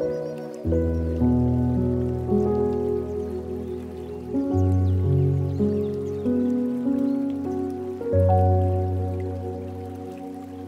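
Slow, gentle solo piano music, soft notes struck one after another over held low bass notes, with a soft trickle of flowing water beneath.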